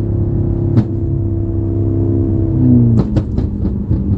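BMW M car's engine in Sport mode running at steady revs, heard inside the cabin. About three seconds in, the note drops as the throttle is lifted, and a quick run of crackles and pops follows.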